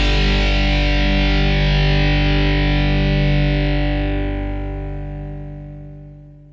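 The final chord of a rock backing track, a distorted guitar chord, held and then fading out over the last two seconds.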